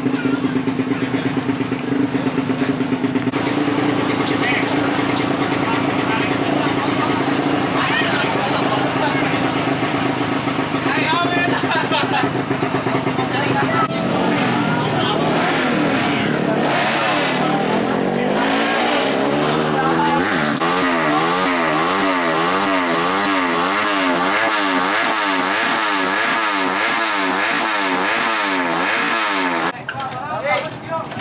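Motorcycle engine running at a steady speed, rising in pitch about halfway through, then revved up and down in a regular rhythm, about twice a second.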